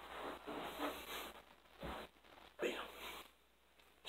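Clothing rustling and swishing in several short rasps from fast arm strikes of a knife drill, with a soft thump about two seconds in.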